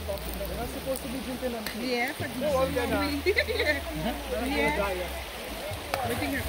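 Several people talking in the background over the steady rush of a shallow river.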